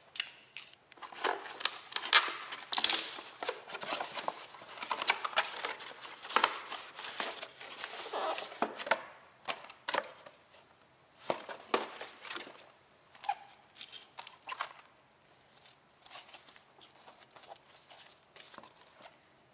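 Cardboard sleeve and plastic wrapping of an inner-tube package being torn open and pulled off by hand: irregular crinkling and tearing, busy for about the first half, then sparser rustling as the rubber tube is handled.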